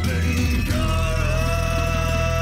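Intro theme music that settles, under a second in, onto a long held chord.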